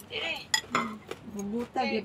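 Chopsticks clinking against a bowl and plate while eating, with one sharp clink about half a second in and a few lighter taps.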